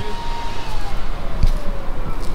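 A motor vehicle's engine whine, steady at first and then falling in pitch from about half a second in, as it passes or slows, over steady street noise.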